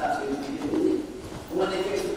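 A man's voice speaking, with a short pause about a second in, then speech resuming near the end.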